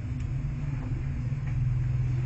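Steady low rumble with a constant low hum.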